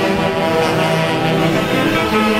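Orquesta típica playing a tunantada: saxophones, clarinets and violins together in long held notes.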